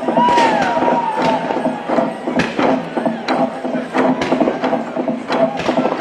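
Konyak log drum beaten by a group with wooden beaters: many hard wooden strikes, two or three a second and uneven, over steady low tones. Voices shout over the beating.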